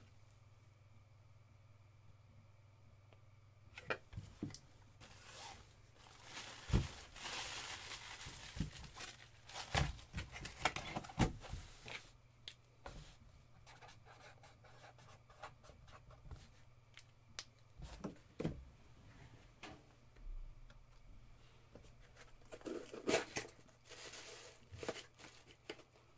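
Cardboard box and packaging being handled: after a few quiet seconds, scattered knocks and clicks with rustling and tearing-like noise, densest between about five and twelve seconds in, with another stretch of rustling near the end. A low steady hum runs underneath.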